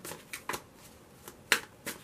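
Tarot cards being shuffled by hand: a few short card clicks and slaps, the sharpest about one and a half seconds in.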